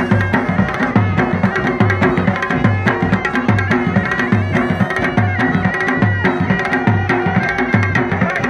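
Traditional folk dance music: a drum beating a steady, heavy rhythm of about three strokes every two seconds under a high, held melody line.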